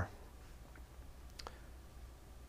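A pause between words: faint room tone with a steady low hum and two faint short clicks.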